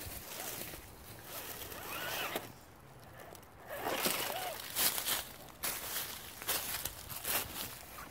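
A scale RC rock crawler driven in short throttle bursts over rocks and dry leaves, its small electric motor and gears whirring in brief rasps mixed with leaf rustling. The rasps come about every half second, with a quieter lull a little before the middle.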